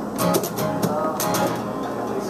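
Unplugged acoustic guitar being strummed in a quick, even rhythm, with no singing.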